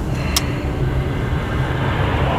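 Steady low rumble of a car heard from inside the cabin, with a single short click about half a second in.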